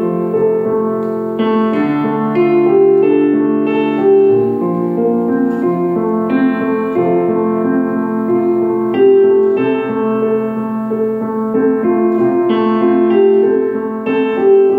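Electronic keyboard played with a piano voice: sustained chords that change every second or two.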